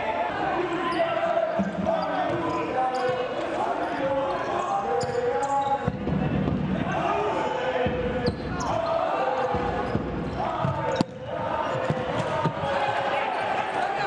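Futsal play in an indoor hall: players' voices calling and shouting across the court, with the sharp knocks of the ball being kicked and squeaks of shoes on the wooden floor, and one hard strike about eleven seconds in.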